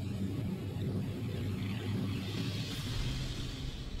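Propeller aircraft engines droning steadily in a low rumble, with a hissing whoosh that swells near the end.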